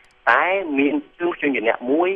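Speech only: a lecturer talking in Khmer, starting after a brief pause.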